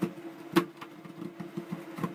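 Metal spatula scraping along a stainless steel cold plate under a frozen sheet of ice cream, rolling it up, with sharp scrapes and clicks, the loudest about half a second in. A steady motor hum runs underneath.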